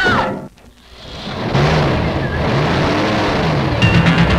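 Cartoon sound effect of a car peeling out. A falling vocal cry ends about half a second in, then a rush of noise builds into a loud revving engine with a wavering low pitch from about one and a half seconds.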